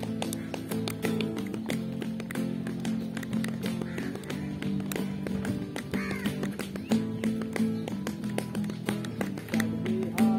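Acoustic guitar strummed in an instrumental passage, held chords with sharp percussive taps throughout.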